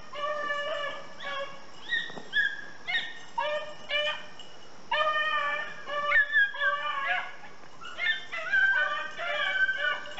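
A hunting dog baying again and again in drawn-out, high, ringing cries while working a scent trail.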